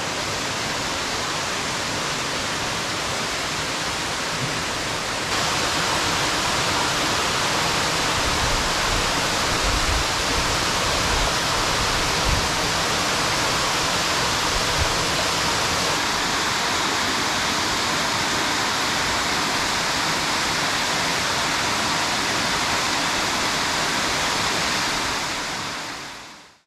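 Waterfall pouring through a narrow cleft in a rock cliff: a steady, even rush of falling water. It gets a little louder about five seconds in and fades out at the very end.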